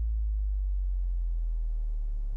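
A single deep, steady bass tone with nothing else over it, slowly fading.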